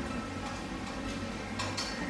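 Folded printer-paper origami units rustling and clicking against each other as they are pushed into a 3D origami swan body, with a couple of sharp clicks near the end. A steady low hum runs underneath.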